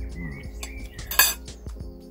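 Knife and fork clinking and scraping on a plate while steak is cut, with one louder clatter just over a second in.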